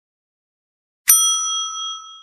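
After a second of silence, a single bright bell ding, the notification-bell sound effect of a subscribe button, rings out and slowly fades.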